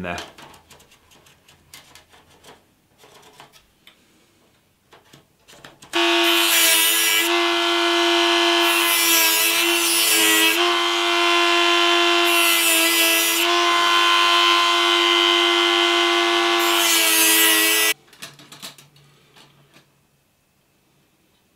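Small rotary tool with a cut-off disc running at high speed in a steady whine, with stretches of grinding hiss as the disc cuts through expanded stainless steel mesh. It starts about six seconds in after a few light taps and stops suddenly near the end.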